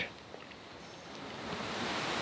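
Faint, even background hiss of room noise with no distinct event, growing louder over the second half.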